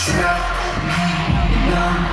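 K-pop dance track with singing played loudly, opening on a sharp hit, with heavy bass underneath.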